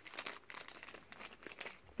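A small clear plastic bag crinkling faintly as fingers work it open to get a charm out: a run of soft, irregular crackles.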